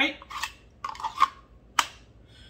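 Kydex holster clicking as a Glock 45 pistol is worked in it: several sharp clicks of the retention, the loudest near the end.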